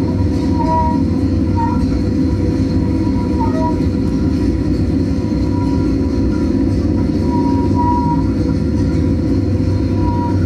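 Experimental electroacoustic drone music: a dense, steady low rumble under a held hum, with a few short high tones sounding now and then.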